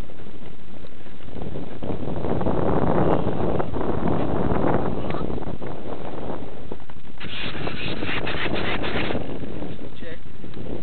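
Wind buffeting the microphone of a small onboard camera: a steady, low rumble of noise that swells about two to five seconds in, with a burst of harsher crackling near the end lasting about two seconds.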